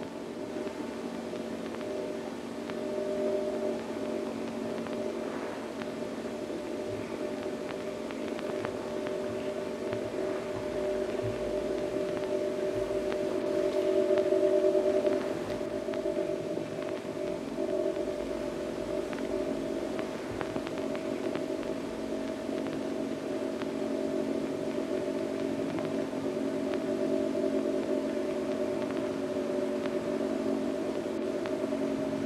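Minimal film-score music of several sustained droning tones held together, with a louder swell about fourteen seconds in.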